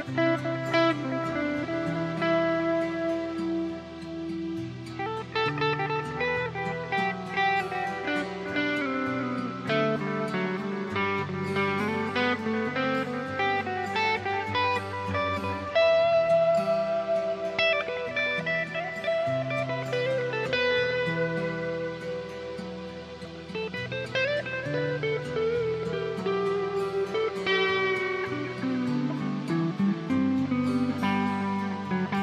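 Electric guitar and keyboard playing an improvised instrumental jam over a bass line that changes notes every second or two.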